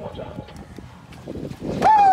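Knocks and scuffling as a large yellowfin tuna is gaffed and hauled over a boat's gunwale. Near the end a man lets out a loud shout that falls in pitch, cheering the fish landing aboard.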